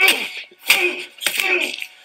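A man chuckling in short breathy bursts, three in about two seconds.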